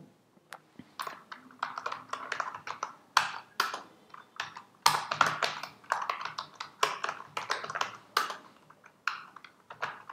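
Typing on a computer keyboard: irregular runs of key clicks with short pauses in between.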